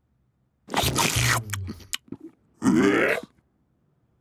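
Cartoon sound effects of a toad gulping down a pile of coal: a deep crunching gulp about a second in, then a short grunt near the end.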